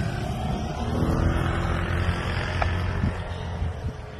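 A motor vehicle's engine running over a steady low rumble, its pitch rising slightly about a second in.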